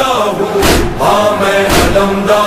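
Chanted Urdu nauha, a Muharram lament, sung with a choir-like backing and a heavy beat roughly once a second.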